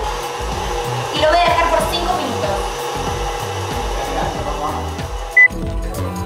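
Electric stand mixer running with a steady motor whir under talk and background music. A short, loud high beep sounds near the end.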